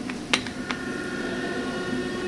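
Steady machine hum like a fan, with two short clicks in the first second.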